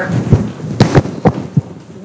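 Microphone handling noise: several dull thumps and knocks as a handheld mic is moved about.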